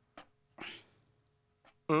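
A man's short breathy vocal sound about half a second in, with faint clicks around it, then a brief grunted "mm" at the end.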